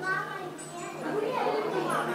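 Children's voices talking and calling out indistinctly, over a steady low hum.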